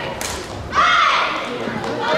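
Badminton rally ending: a sharp crack of a racket striking the shuttlecock just after the start, then a loud, high-pitched shout from a player a little under a second in as the point is won.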